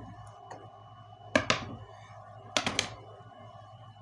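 Objects handled and knocked on a wooden workbench: one sharp knock about a second and a half in, then a quick run of three or four clicks and knocks a little past two and a half seconds.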